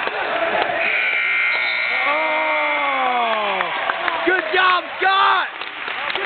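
A steady, buzzer-like tone sounds for about two seconds, starting about a second in, marking the end of a wrestling match. Over it a spectator lets out a long yell that falls in pitch, followed by more shouts from the crowd.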